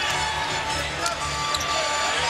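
Basketball being dribbled on a hardwood court, a few sharp bounces heard over steady arena background sound with music.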